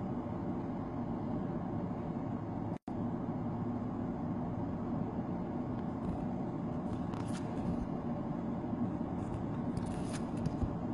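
Steady low background noise with a few faint rustles of trading cards being slid and handled, the clearest just before the end. The audio cuts out completely for a moment about three seconds in.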